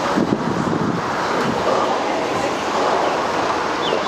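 Steady street noise of road traffic with wind buffeting the microphone, and faint voices in the first couple of seconds.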